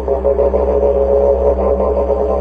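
Didgeridoo playing a steady low drone, its overtones shifting and pulsing quickly above it, swelling louder right at the start.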